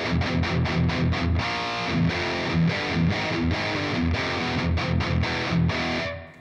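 Electric guitar played through a Line 6 POD Express amp-modelling pedal on a heavy, high-gain distorted tone: a riff of fast, clipped low notes, breaking off at the end.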